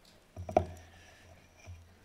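A sudden thump picked up by the pulpit microphone, followed by a low rumble that fades out shortly before the reader starts speaking: handling noise as the lectern, book or microphone is touched.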